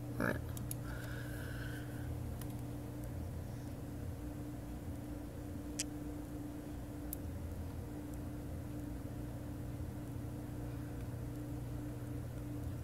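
Steady low hum of a running computer, with two faint sharp clicks around the middle.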